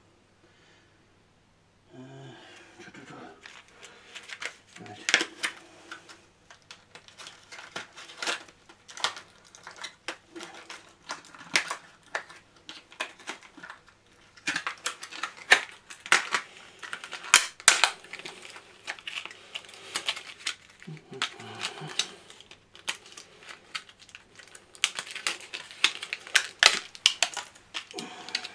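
Small metal and plastic parts and their packaging being handled during assembly: a long run of quick irregular clicks, taps and rustles, busier from about fourteen seconds in, with a brief low mumble twice.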